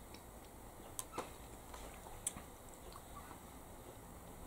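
A few faint, short clicks in a quiet room: two close together about a second in, and one more about a second later.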